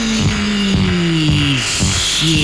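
1968 psychedelic pop single playing from a 45 rpm vinyl record: a sliding tone falls slowly in pitch, breaks off near the end and starts again, over short drum-like hits.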